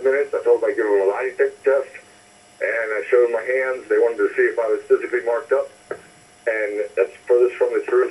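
Speech heard over a telephone line: a person talking continuously in a thin, narrow-band voice, with two brief pauses.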